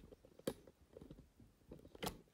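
Faint handling noise of a phone being adjusted in a tripod mount, with one sharp click about half a second in and a few softer knocks.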